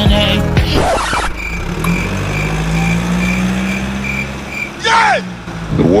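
Car engine sound effect running steadily after a song cuts off about a second in, its pitch rising slightly and then easing off, with a high beep repeating about twice a second over it. A short falling voice-like sound comes near the end.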